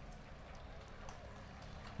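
Faint hoofbeats of a horse cantering on grass, over low outdoor background noise.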